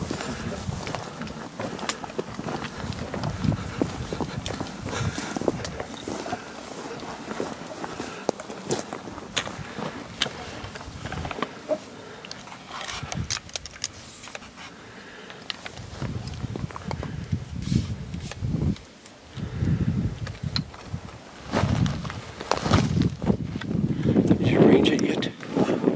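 Footsteps on dry, rocky ground and brush scraping against clothing, with scattered clicks and knocks of gear being handled.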